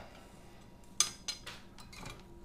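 Soldering iron set back into its coiled metal stand: a sharp metallic clink with a short ring about a second in, followed by a few lighter clicks.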